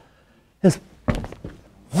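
Two short thumps, a little under half a second apart, the second one deeper, with a brief low rumble after it.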